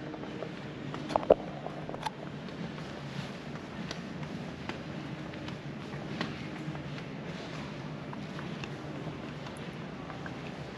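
Footsteps and camera handling noise on a polished concrete floor, a scatter of faint clicks over a steady low room hum, with a short louder knock about a second in.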